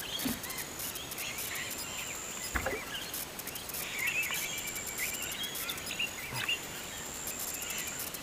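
Creekside bush ambience: birds chirping on and off over a thin, high, steady insect drone that comes and goes. There is a brief soft knock about two and a half seconds in.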